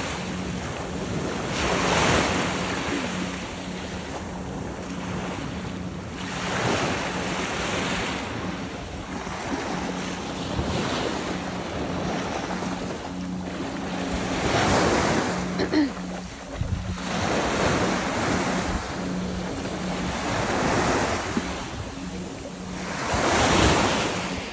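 Small surf waves washing up and breaking on a sandy beach, swelling and fading every few seconds.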